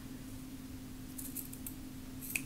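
Small Slice ceramic-blade scissors snipping through ribbon: a few faint, crisp snips about a second in, over a steady low hum.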